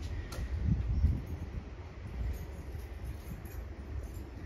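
Low rumbling handling noise from a hand-held phone camera being carried along, with a single faint click early on.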